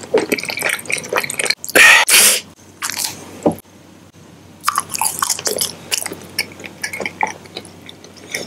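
Close-miked mouth sounds of someone eating a snack: wet clicks and smacks of chewing. A short, louder burst of noise comes about two seconds in, and the sounds pause briefly near the middle before the chewing resumes.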